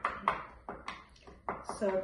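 A spoon stirring and mashing clumpy inulin powder into half-and-half in a bowl, knocking and scraping against the bowl in quick strokes about three times a second. The powder is clumping rather than dissolving.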